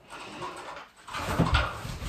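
Aluminium stepladder being moved and set down, with a few knocks and rattles, the heaviest about a second and a half in.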